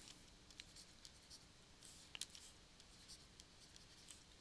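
Faint scratching of a pen writing a word in short strokes, with a light tick a little past halfway.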